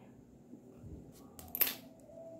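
Quiet handling of grosgrain ribbon, pins and a metal hair clip, with one short, sharper rustle about one and a half seconds in.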